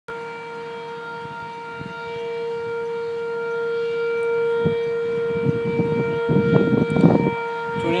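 Outdoor tornado warning sirens sounding one steady tone that grows slowly louder. A short burst of low rushing noise comes through near the end.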